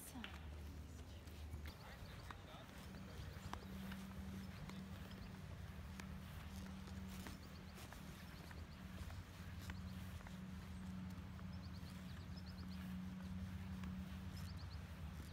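Quiet outdoor ambience: a steady low hum, with a few short quick series of faint high chirps and scattered soft clicks.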